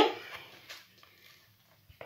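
Quiet room with a couple of faint soft knocks in the first second, as the plastic mixing bowl is lifted off the kitchen counter, then near silence.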